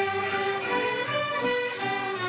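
A large student mariachi ensemble starts playing on a count-off, many violins carrying a melody together over strummed guitars.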